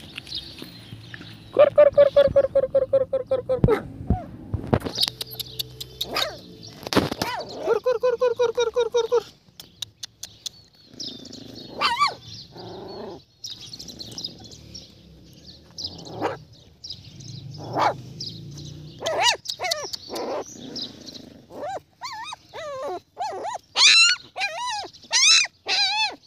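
Dogs fighting: growling and snarling in loud rapid bursts, with high-pitched yelping near the end.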